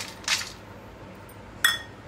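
Stainless steel cup and bowl clinking together: a couple of short knocks near the start, then a sharp, ringing metallic clink near the end.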